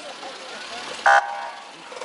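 A single short car-horn toot about a second in, over the low hum of a car engine.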